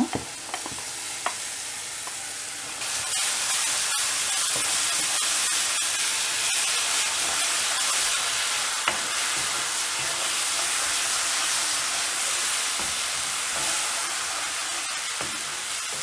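Ground onion-tomato paste sizzling in hot oil in a kadai while a wooden spatula stirs it, with small crackles through the hiss. The sizzle grows louder about three seconds in and then stays steady.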